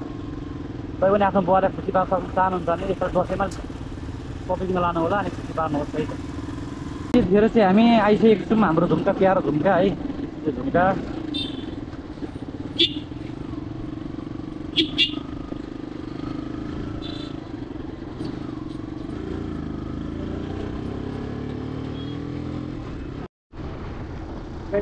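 Motorcycle engine running at a steady note while riding in traffic, with voices over it during the first ten seconds or so.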